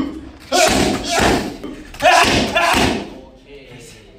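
Strikes landing on Thai pads, about five in the first three seconds, each with a sharp exhaled 'shu' from the fighter; it goes quieter after about three seconds.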